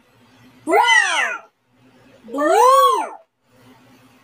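A child's voice saying two colour names in turn, brown and then blue, each word high-pitched and rising then falling, put through an editing effect that makes the words hard to make out.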